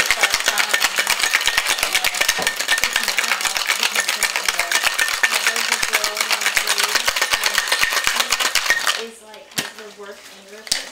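Ice rattling hard in a cocktail shaker as a drink is shaken, a fast, steady run of sharp knocks that stops about nine seconds in.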